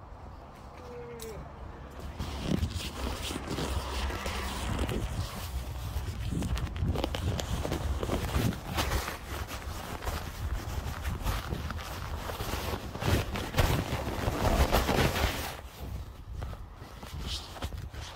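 Close scraping and rustling handling noise on the camera microphone, full of small clicks and a low rumble, starting about two seconds in and easing off near the end.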